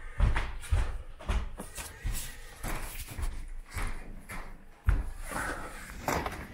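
Handling noise from a camera being picked up and carried: irregular thumps, knocks and rubbing, with one heavier bump about five seconds in.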